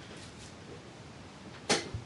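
A single short, sharp knock near the end, from hand handling at the work surface, over a faint steady hiss.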